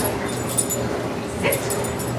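A dog gives a short whine about a second and a half in, over a steady low hum.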